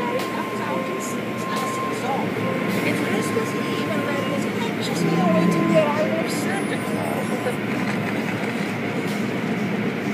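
Automatic car wash tunnel running: a steady wash of noise from spinning cloth brushes and water spray, with a thin steady whine during the first few seconds and a brief swell in loudness about halfway through. Voices are faint underneath.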